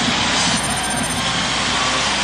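Large ballpark crowd cheering after a run scores for the home team: a steady roar.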